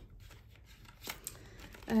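Plastic cash envelopes and binder pages being handled: a faint rustle, with a light click about a second in.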